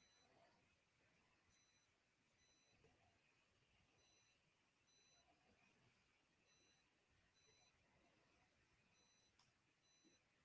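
Near silence, with very faint short high-pitched beeps coming in pairs about every two and a half seconds.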